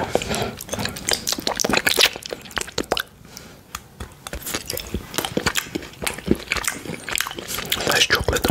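Close-miked ASMR: a chocolate bar bitten and chewed, with sharp clicks and wet mouth sounds, mixed with a fluffy pom-pom brush rustling over the microphone.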